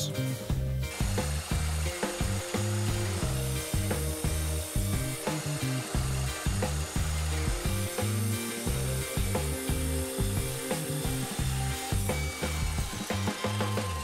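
Mitre saw cutting pine boards to length, the blade running through the wood.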